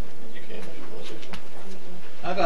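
Faint, indistinct voices in a meeting room over a steady hiss, with a couple of light clicks and a soft thump about a second and a third in.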